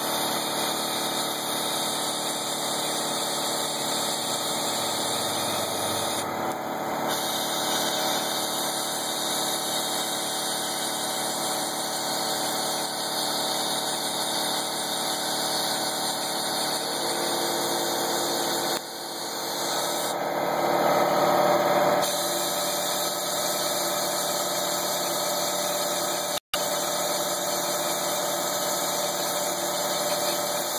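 Steady machine hum with a haze of air noise while an electrostatic powder-coating gun sprays powder onto a hanging steel bar. The sound swells for a few seconds about two-thirds of the way through, and it cuts out for an instant shortly after.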